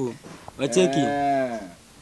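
Several men's voices joining in one long drawn-out exclamation, starting about half a second in and lasting about a second, the pitch rising then falling.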